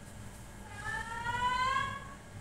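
A faint single tone that rises slowly in pitch, starting a little under a second in and lasting just over a second, like a distant siren or alarm.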